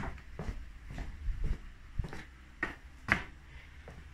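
Footsteps on a concrete garage floor: light knocks and clicks about every half second, over a faint low steady hum.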